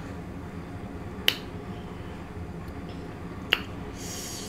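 Two sharp clicks about two seconds apart from eating fried fish close to the microphone, over a low steady hum.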